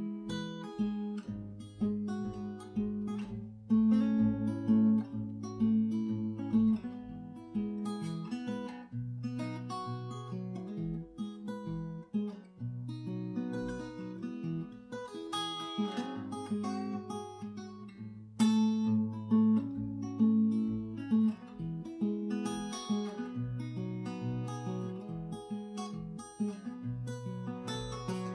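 Acoustic guitar with a capo, played alone in a steady blues rhythm, picked notes ringing over bass notes.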